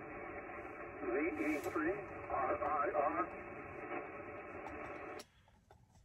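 Amateur radio transceiver receiving single-sideband voice on the 20-metre band: steady, narrow, band-limited static with a faint, weak voice coming through, a distant station answering a CQ call. The receiver audio cuts off about five seconds in.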